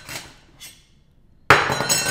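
A metal credit card clinking against a desk, once about one and a half seconds in, with a short metallic ring; the ring of an earlier clink fades out at the start.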